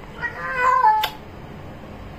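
A cat meowing once: a single call of just under a second that drops in pitch at the end, closed by a brief click.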